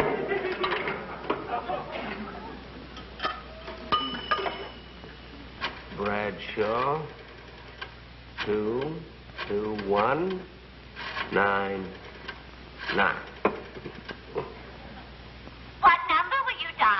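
A few short clicks, then several brief voice-like sounds that slide up and down in pitch.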